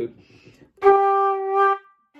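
Wooden Irish flute playing a single G, held steady for about a second from just under a second in, a full note with strong overtones. It is played to show G as a strong, resonant note on the flute.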